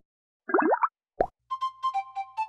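Cartoon sound effects: a short rising squeaky glide about half a second in, then a single pop a little after a second. Light children's background music with short plucked notes starts at about the halfway point.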